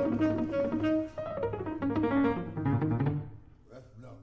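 Tenor saxophone and grand piano playing a jazz duet, held melody notes over the piano; the music thins and dies down to a quiet lull about three seconds in.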